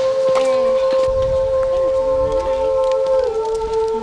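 Background film score: one long held synthesizer note that steps down slightly in pitch about three seconds in, over a low rumble.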